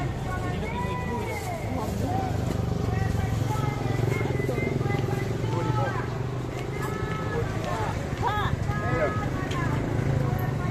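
Busy street-market ambience: voices talking and calling in the background over the steady hum of idling motorcycle engines.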